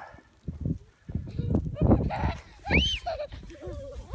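A sled sliding down a packed-snow slope toward the camera, with a rider's high squeal that rises and falls about three seconds in.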